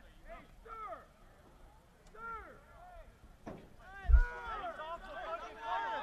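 Several voices shouting short calls across a soccer field, sparse at first and overlapping more thickly from about four seconds in. A single low thump about four seconds in is the loudest sound.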